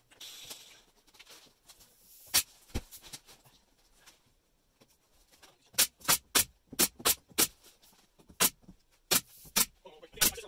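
Pneumatic brad nailer firing into thin luan plywood skin on a wooden camper frame: a couple of sharp shots about two and a half seconds in, then a quick run of shots, several a second, from about six seconds on.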